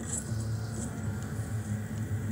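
A low, steady droning rumble from the animated episode's soundtrack, a dark, sustained underscore or ambience beneath a pause in the dialogue.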